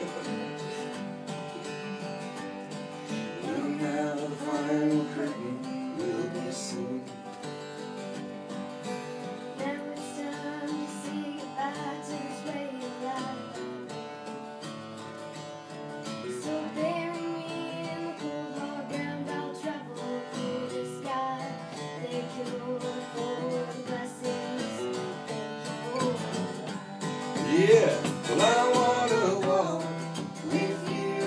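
Acoustic guitar playing an instrumental passage of a country song, picked and strummed, getting louder near the end.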